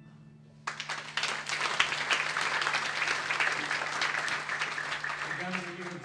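Audience applauding, starting suddenly under a second in as the last piano notes die away and going on for about five seconds; near the end a man starts to speak over the fading applause.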